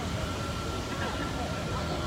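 Downtown street ambience: a steady low rumble of traffic with faint voices of people around, and a thin steady high whine running through it.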